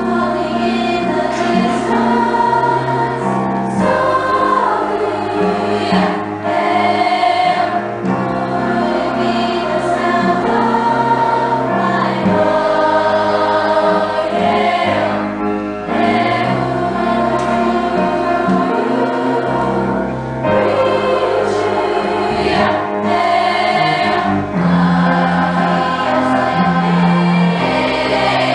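A school girls' chorus singing a song together, many voices in harmony, sustained without a break.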